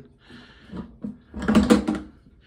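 Plastic clatter of an Apache 4800 hard case being opened: a quick run of clicks and knocks from the latch and lid, loudest about one and a half seconds in.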